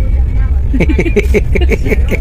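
Steady low rumble of a moving passenger train, heard from inside the coach. About three quarters of a second in, a voice joins with quick, repeated short sounds.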